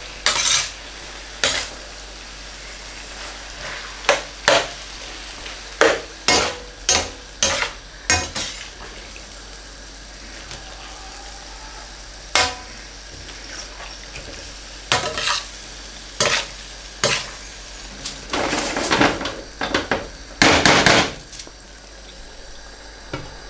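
Metal spatula scraping and knocking against a wide stainless steel pan as raw chicken pieces are mixed into a spiced masala over a steady sizzle on high heat. The scrapes come irregularly every second or two, busiest near the end.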